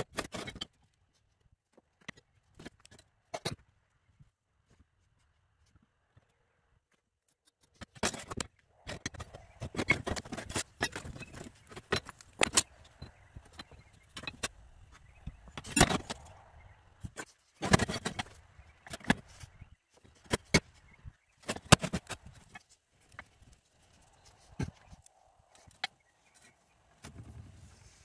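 Steel plates and hand tools clinking and knocking against a steel sheet as they are handled and positioned: a few faint clicks at first, then a busier run of sharp metallic clinks and knocks from about eight seconds in.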